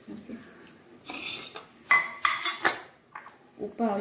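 A spoon clinking against a stainless steel mixer-grinder jar: a quick run of four or so sharp, ringing clinks about two seconds in, after a softer scrape.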